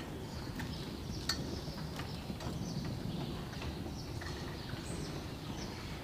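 Friesian horse in harness pulling a four-wheeled carriage over arena sand: a steady low rumble of hooves and wheels with a few light knocks, and faint high chirps above it.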